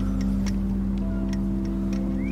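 A boat engine running at a steady pitch, with a few faint clicks over it.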